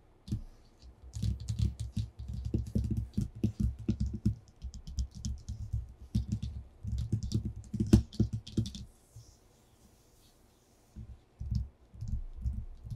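Fingertips and nails tapping quickly on a sheet of paper over a tabletop, in dense flurries of many light taps, with one sharper tap about eight seconds in. The tapping stops for about two seconds and starts again near the end.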